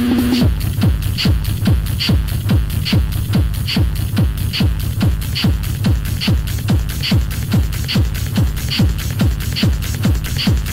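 Techno track from a continuous DJ mix, driven by a pounding kick drum of short falling thumps a little over twice a second. A fast ticking hi-hat pattern runs over it, with a brighter accent on every other beat. A held synth tone cuts off about half a second in, leaving the beat bare.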